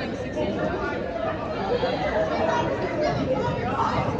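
Indistinct chatter of spectators talking among themselves in a gymnasium, with several voices overlapping.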